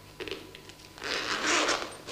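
A handbag's zip pulled open in one long stroke about a second in, after a brief rustle of handling the bag.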